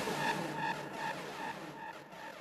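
Fading tail of a hardstyle track: a synth tone repeating in echoes about five times a second over a hiss, dying away.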